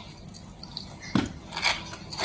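Close-up chewing of a mouthful of crispy fried potato strips (kentang mustofa), giving a few short, sharp crunches from just past a second in.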